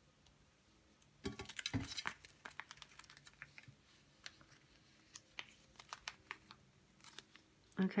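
Thin clear plastic sleeve and double-sided tape being handled: a cluster of crinkles and crackles about a second in, then scattered light clicks.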